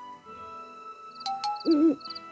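A cartoon owl hooting once, short and loud near the end, over soft background music, with a couple of short high chirps just before it.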